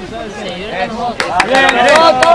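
Rugby spectators on the sideline talking, then from about a second in, sharp hand claps and a voice rising into a loud, held shout of cheering near the end.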